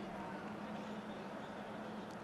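Faint, steady background ambience of a near-empty football stadium broadcast, with a low steady hum under it.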